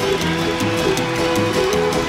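Fast country-bluegrass band music with the fiddle leading over acoustic bass, banjo, mandolin and drums. The bass and the drums keep a steady driving beat.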